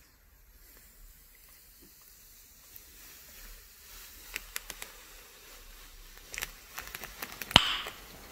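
Protective plastic film being peeled off a pen tablet's drawing surface: a faint hiss of the film lifting, with scattered crackles and ticks that grow busier, and one sharp click near the end.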